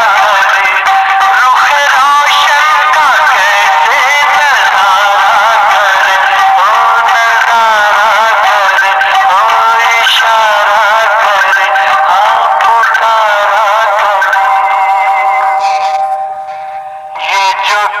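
A man singing a Hindi film song solo, with long, wavering held notes and a thin sound that has no bass. Near the end the voice drops away for about a second, then comes back in.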